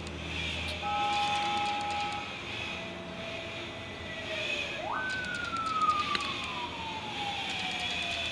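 A siren rising sharply about five seconds in, then falling slowly in a long wail, with a brief held horn-like tone about a second in. Under it runs the steady high whine of an electric facial cleansing brush spinning against the skin.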